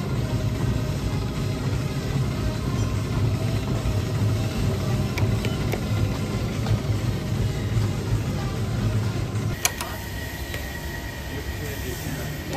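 Treadmill running: a steady low rumble from its motor and belt. About ten seconds in this stops abruptly with a click, leaving a quieter room with a faint steady high tone.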